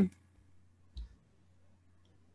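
A single short click about a second in, over a faint steady low hum; otherwise near silence.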